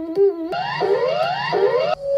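Electronic alarm tone: a warbling pattern of alternating pitches that gives way, about half a second in, to repeated rising whoops, each about half a second long, over a low buzz.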